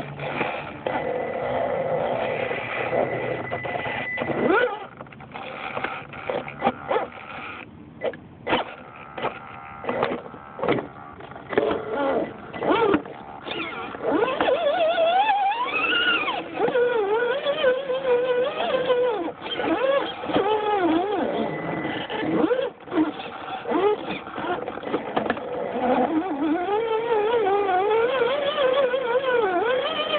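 Electric motor and geared drivetrain of an Axial SCX10 RC crawler whining, the pitch rising and falling with the throttle. From about five seconds in to about fourteen it goes in short stop-start bursts, then runs more steadily again.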